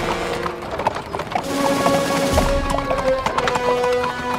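Background music with held tones, over the clip-clop of horses' hooves as a pair of horses pulls a carriage.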